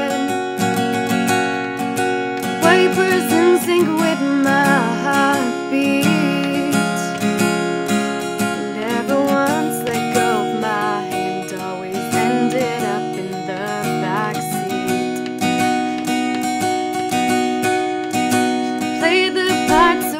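Acoustic guitar strummed as accompaniment, with a woman's solo voice singing over it in phrases.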